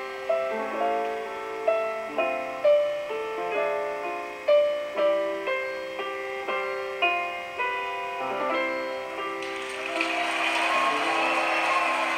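Grand piano with double bass playing the slow instrumental close of a song, single notes struck one after another and left to ring. About nine and a half seconds in, applause comes up over the last notes.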